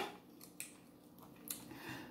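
Faint eating sounds as spicy instant noodles are eaten with wooden chopsticks: a few soft clicks and mouth noises.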